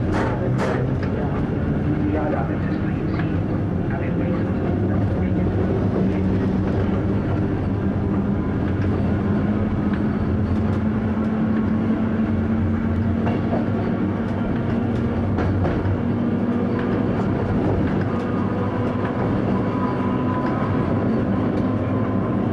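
Train running, heard from inside the driver's cab: a steady running hum with a low tone that rises a little and grows stronger through the middle. A few sharp clicks of wheels over rail joints or points come in the first seconds.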